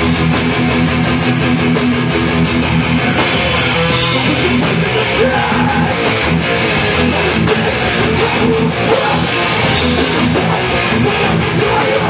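A thrash metal band playing live at full volume: distorted electric guitars, bass and a drum kit driving a steady beat.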